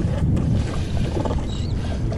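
A steady low rumble aboard a small skiff on open water, with no sharp sounds.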